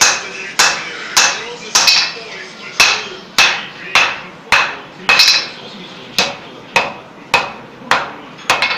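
Hand hammer striking red-hot steel on an anvil, forging a dotted decorative texture into the metal. The sharp, ringing blows come about every 0.6 seconds, with a couple of brief pauses.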